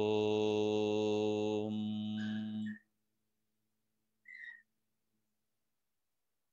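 A man chanting one long 'Om' on a single steady pitch for nearly three seconds, its vowel sound changing about two seconds in before it stops. This is one of a set of three Om chants.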